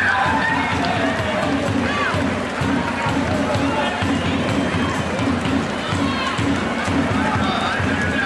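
Arena crowd noise from a packed sports hall, with scattered shouts from the spectators, over music with a steady beat.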